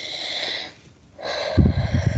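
A person breathing out heavily, close to a microphone, twice. The second breath blows onto the mic and makes low popping thumps.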